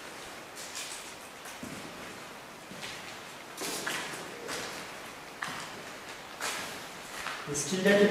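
A few short, soft hissy sounds, with a person's voice setting in near the end.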